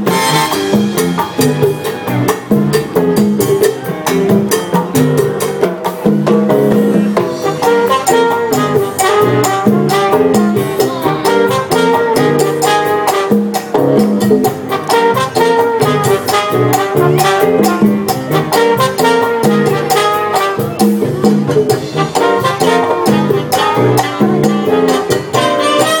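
Live Latin band playing a salsa number, with congas, timbales and drum kit driving a continuous rhythm.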